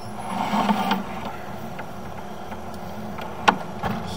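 A steady low machine hum, with a single sharp click about three and a half seconds in.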